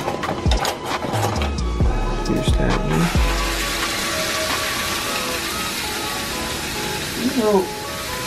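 Cubed raw steak dropped into a hot frying pan of butter, sizzling steadily from about three seconds in, after a few clicks and knocks of utensils. Background music plays throughout.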